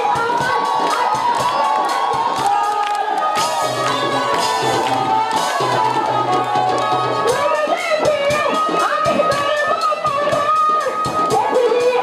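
Live jatra dance music with a quick, steady drum beat under a melody line, and the audience cheering and shouting over it, most strongly a few seconds in.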